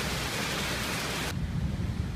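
Steady rain falling, a hiss that cuts off suddenly a little over a second in, leaving a faint low rumble.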